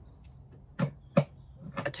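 Two short knocks about half a second apart, over faint room tone.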